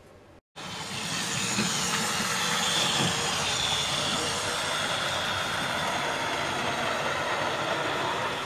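00 gauge model train, a tank locomotive pulling a coach, running along the track: a steady whirring hiss of its small electric motor and wheels on the rails, starting abruptly about half a second in.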